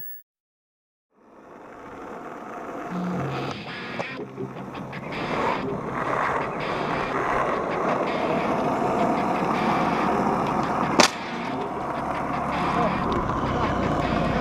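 Skateboard wheels rolling on rough asphalt: a steady rolling noise that starts after a moment of silence and slowly grows louder, with one sharp clack of the board about three seconds before the end.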